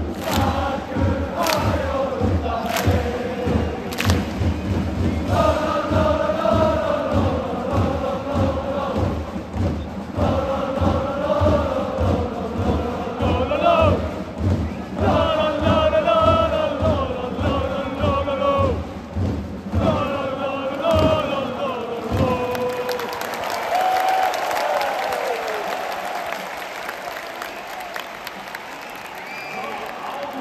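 Football supporters' end singing a chant in unison over a steady drum beat. About 22 seconds in, the chant and drum stop and give way to crowd cheering and applause.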